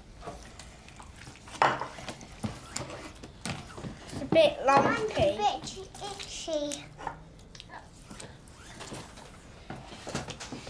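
A young child's voice making wordless sounds with a pitch that rises and falls, loudest about four to five seconds in. Around it come short soft knocks and pats as hands work a wet cornflour and water mixture in a tray.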